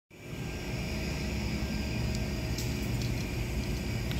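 Steady low hum of packaging-machine and factory machinery, with a few faint ticks; no air leak is hissing yet.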